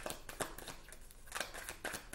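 Tarot cards being shuffled by hand: a run of quick, irregular card snaps and flicks.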